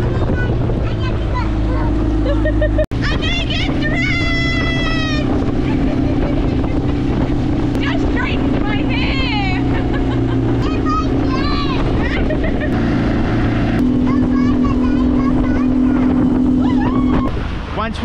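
Outboard motor of a small aluminium dinghy running steadily at speed, with water rushing past the hull and wind on the microphone. High-pitched voices and laughter come over it at times.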